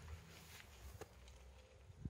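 Near silence: faint outdoor background with a couple of faint clicks.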